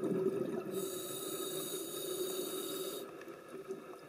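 Scuba diver breathing through a regulator, heard through the underwater camera housing: a low bubbling rush, with a steady hiss from about one second in to three seconds in.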